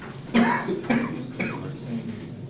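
A person coughing, with a sudden loud start about a third of a second in and a few shorter sounds after it.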